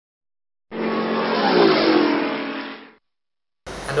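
Intro sound effect of a car engine revving as it passes, dropping in pitch as it goes by. It starts under a second in and fades out about three seconds in.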